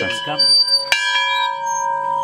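Large rusty yoke-mounted iron farm bell rung gently by hand, its clapper striking twice about a second apart. Each strike rings on with a steady, clear tone.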